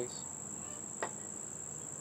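Insects trilling steadily at a high pitch, with one faint click about a second in.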